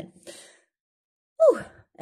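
A woman's short, breathy "ouh" sigh about a second and a half in, falling steeply in pitch: a sigh of relief at having got through a sentence she had trouble saying.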